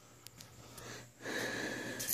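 A person's breath close to the microphone: a wheezy, noisy exhale with a thin whistle, starting a little past a second in, after a quiet moment with a couple of faint clicks.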